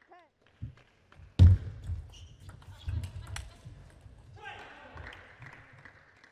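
Sounds of a table tennis hall between points: a heavy thud about one and a half seconds in, a few light sharp clicks of the ball, and short snatches of a voice.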